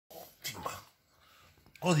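An angry chihuahua snarling in two short bursts as it snaps at a chew bone. A man's voice starts near the end.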